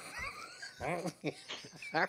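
Men laughing, with a high, squealing rising laugh near the start and short laughing bursts after it.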